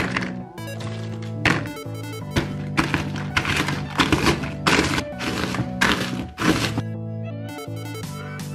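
Background music with steady held bass notes, over repeated dull thuds from about a second and a half in: chocolate chip cookies being pounded into crumbs in a plastic tub with the bottom of a bottle.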